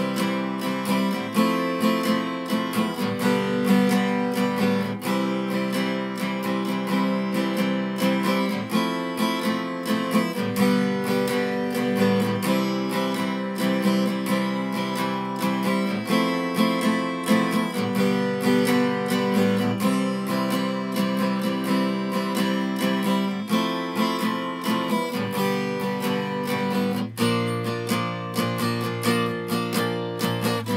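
Steel-string acoustic guitar strummed in a down, down, up, up, down pattern, the chords changing every second or two.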